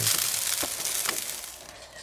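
Chicken wings sizzling on a gas grill's grate, a steady hiss that fades away near the end, with a couple of light clicks.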